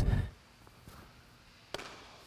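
A single sharp knock near the end: a tennis racket striking the ball.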